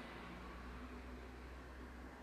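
Faint steady hiss with a low hum: room tone, with no distinct sound.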